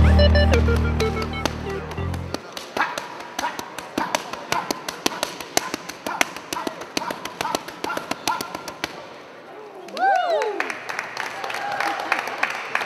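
Boxing gloves striking focus mitts held by a trainer: a fast, uneven run of sharp smacks that stops about nine seconds in. Electronic music fades out over the first two seconds, and a voice rises and falls near the end.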